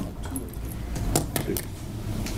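Light metallic rattling and a few sharp clicks, clustered a little past the middle, as small objects are handled at a podium microphone, with a steady low hum underneath.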